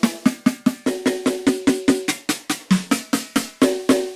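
Snare samples from a Roland TD-17 electronic drum module, struck in a fast even run of about five hits a second. The ringing pitch of the snare changes a few times as the selected sample is scrolled through, from a mahogany snare to a steel snare.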